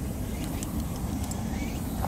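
Steady low rumble of wind buffeting the microphone outdoors, with a few faint ticks over it.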